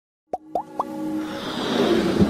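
Animated logo intro sting: after a moment of silence, three quick rising plops in a row, then a swelling whoosh over held musical tones.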